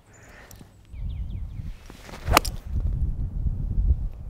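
A golf club striking a golf ball once, a single sharp crisp click a little past halfway, over a low rumble.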